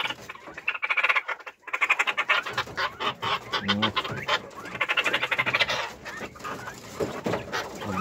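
Caged Texas quail calling, in several bursts of rapid rattling chatter.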